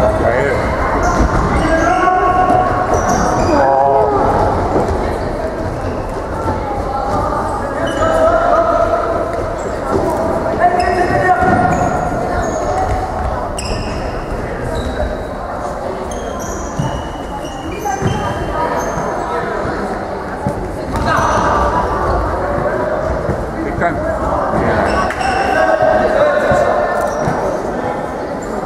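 An indoor football being kicked and bouncing off a hard sports-hall floor, with repeated knocks, amid shouting voices and short high squeaks, all ringing in the large hall.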